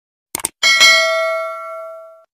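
Subscribe-button animation sound effects: a quick double click, then a single bell ding for the notification bell that rings out with several clear tones and fades away over about a second and a half.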